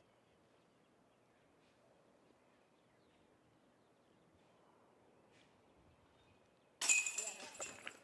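Disc golf putt hitting the basket's metal chains: a sudden jangle of chains about seven seconds in, ringing briefly as the disc drops into the basket for a made putt. Before it, near silence.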